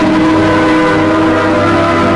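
Soundtrack music of loud, sustained organ chords, moving to a new chord at the start and again about a second and a half in.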